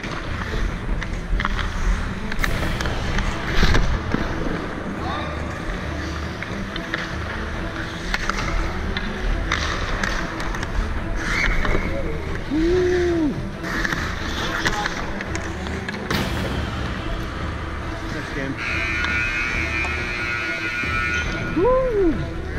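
Ice hockey play heard up close from a player's helmet camera: skate blades scraping and carving on the ice, with several sharp clacks of sticks on the puck and ice, under a steady low rumble on the microphone. Players call out briefly now and then.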